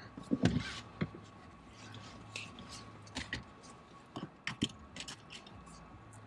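Scattered clicks and knocks of a seatbelt being pulled across and handled in a car cabin, over a faint low hum.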